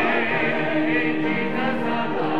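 A church congregation singing a hymn together, voices holding long notes with a wavering vibrato.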